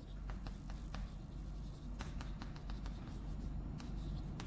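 Chalk writing on a blackboard: a string of short, irregular taps and scratches as the chalk strikes and drags across the board, forming characters.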